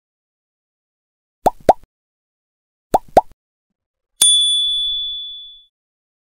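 Subscribe-button animation sound effects: two pairs of short rising pops as the like and subscribe buttons are clicked, then a single bright bell ding that rings out for about a second and a half.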